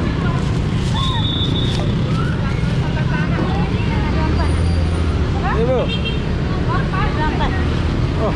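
Steady rumble of passing road traffic, with scattered snatches of people's voices over it.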